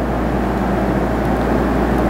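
Steady low rumbling background noise over a constant low hum, with no distinct events, like a fan or air conditioner running.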